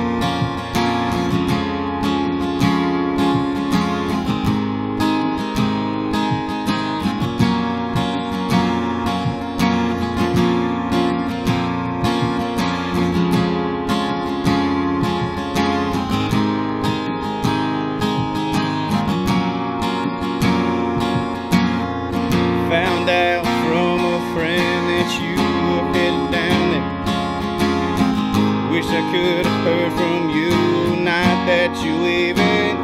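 Acoustic guitar strummed steadily over sustained electronic keyboard chords from a Korg synthesizer: an instrumental break in a pop-country song. A wavering higher melody joins in during the last third.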